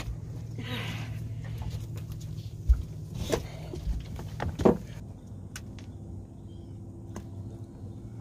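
A large catfish released over the side of an aluminum boat: a splash into the water, then several hard knocks on the boat, over a steady low hum.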